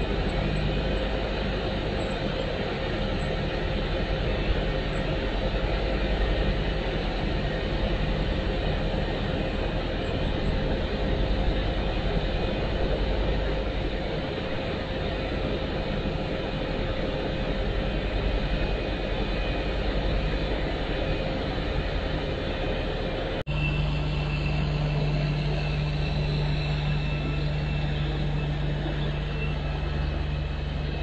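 Diesel engine of a rail vehicle running steadily, a continuous rumble with a steady whine over it. About 23 seconds in the sound cuts abruptly to a different engine with a steady low hum, from a road-rail excavator on the track.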